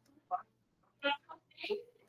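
Brief, indistinct snatches of speech: three or four short voice fragments with quiet gaps between them.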